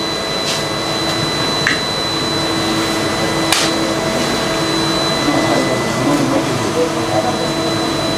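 Steady whirring hum of laboratory instrument cooling fans, with a faint constant high whine and a few light clicks.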